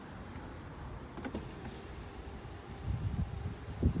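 Electric rear-window sunblinds of a BMW 730d long-wheelbase motoring up, a faint steady motor hum. A low rumble and a single knock come near the end.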